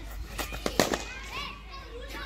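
Cricket bat striking a ball in the nets: a softer knock and then a sharp crack a little under a second in, the loudest sound here, with voices in the background.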